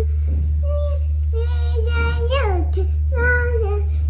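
A child's voice singing wordless held notes in a few short phrases, one sliding up and back down a little over two seconds in, over a steady low hum.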